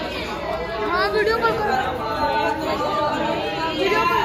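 Several people talking at once around a seated gathering: overlapping chatter, with no one voice standing out.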